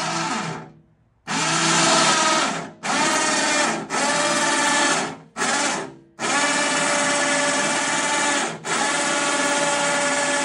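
Electric winch motor on a hitch-mounted lift carrier hoisting a Batec front-drive handcycle attachment. It runs in short bursts, stopping and starting about seven times, with the longest runs near the end.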